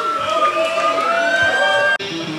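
Sustained, amplified electric guitar tones, siren-like, gliding slowly up and down in pitch; they cut off abruptly at the end.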